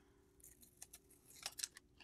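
Faint handling noise, close to silence: a few soft crinkles and ticks as a taped paper sheet is peeled off a pressed print, over a faint steady hum.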